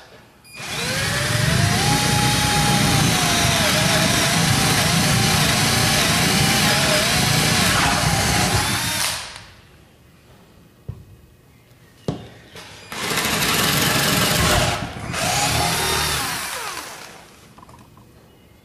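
Cordless drill with a 3/8-inch bit boring holes through the wooden wall of a beehive brood box. A long run of about eight seconds whose motor pitch rises and then wavers as the bit bites, then a pause with a couple of clicks, then a second, shorter run in two bursts that winds down near the end.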